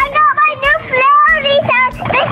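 A child singing a melody in a high voice, gliding between short held notes.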